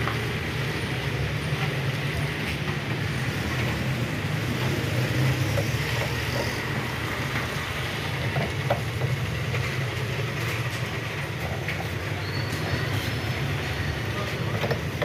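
A steady low mechanical rumble with a faint high whine running through it, broken by a few light clicks and taps.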